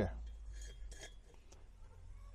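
A few faint metallic clinks as a wire hook catches in the holes of a metal can stove, about half a second and a second in.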